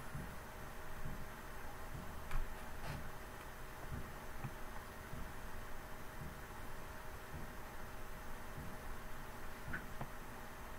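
Brushless motor driven slowly by a VESC-based controller during hall sensor detection: a faint steady whine over a low uneven rumble, with a couple of light clicks about two and a half to three seconds in.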